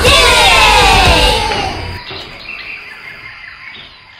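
A backing track for a children's song ends in a tangle of falling, sliding tones over its bass, then drops away about halfway to faint bird chirps.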